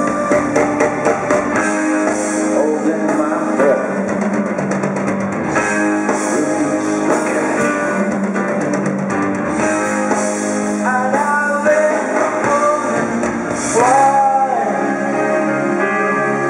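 Live rock band playing: guitar, drum kit and keyboards, with a sung vocal line, amplified in a large hall.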